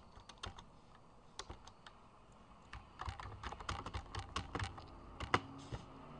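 Typing on a computer keyboard: a few scattered keystrokes, then a quick run of typing from about halfway through.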